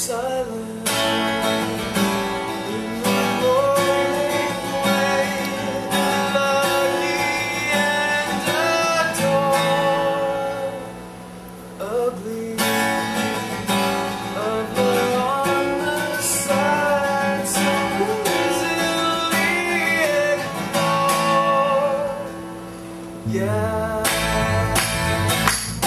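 Acoustic rock song: strummed acoustic guitars with a sung lead vocal. The playing thins out briefly about halfway through, then comes back in with a strong strum.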